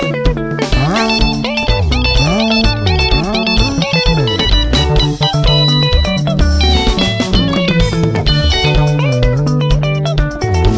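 Instrumental break in a Zimbabwean sungura song: fast, bright picked electric lead-guitar runs over interlocking rhythm guitar, a moving bass-guitar line and a steady drum beat.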